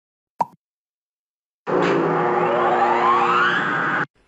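Intro sound effect: a single short pop, then after a second's silence a loud sustained chord of steady tones with a rising sweep over it, which cuts off suddenly.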